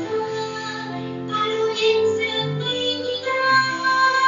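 Music: a song with a sung melody over instrumental accompaniment.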